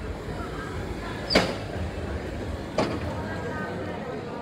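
Busy night street ambience: a steady hum of traffic with distant voices, broken by two sharp knocks about a second and a half apart, the first louder.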